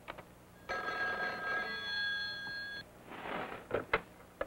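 A telephone bell ringing once, for about two seconds. Near the end come a short rustle and a couple of sharp clicks.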